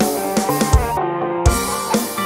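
Electronic music track with a drum kit beat and sustained pitched notes; about halfway through, the drums and bass drop out briefly, then a drum hit brings the beat back.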